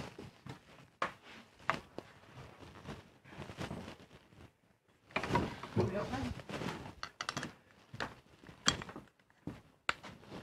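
Scattered knocks and thunks of workshop objects being handled and moved while someone rummages to get out a router cutter, with a cluster of sharp clicks late on.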